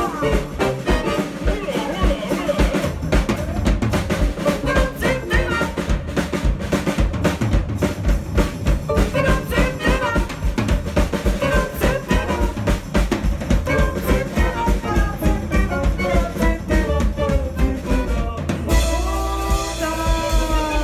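Live band music: acoustic guitar, double bass and drum kit playing a steady, quick beat. About a second before the end the music changes abruptly to a different passage.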